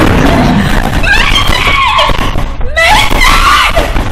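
A person screaming in two long, high, wavering cries, over a loud rushing noise with knocks and bangs.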